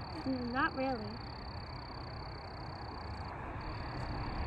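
A steady high-pitched trill from a distant calling animal chorus carries on in the background, breaking off briefly near the end, over a faint outdoor hiss.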